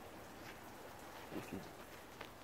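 Quiet background: faint, even hiss with no distinct sound, and a soft murmured word about one and a half seconds in.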